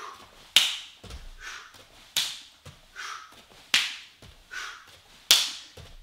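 Bare sole of a foot slapping into an open hand during side kicks, four loud clapping slaps about a second and a half apart.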